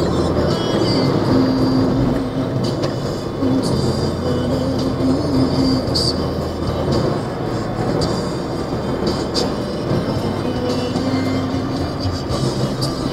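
Steady engine and road rumble heard from inside a vehicle moving at speed on a highway, with a few brief rattles. Music plays underneath.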